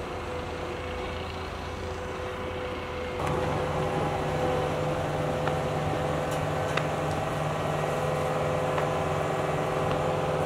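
Compact track loader's diesel engine running steadily, growing louder about three seconds in as the machine comes closer carrying a concrete block. A few light clicks sound over it.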